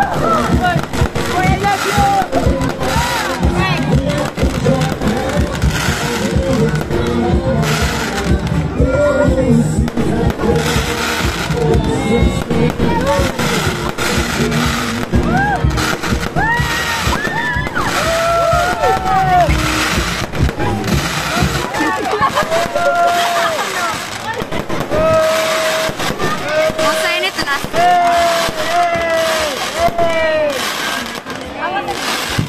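Aerial fireworks bursting in quick succession, over music with a sung vocal line. The bursts thin out about two-thirds of the way through, leaving the music with its long held notes.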